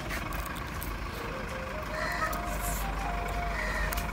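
Steady low rumble of a motor vehicle running, with faint wavering tones above it.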